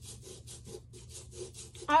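A small hand tool scraping and cutting into a crumbly excavation bar in quick, repeated strokes.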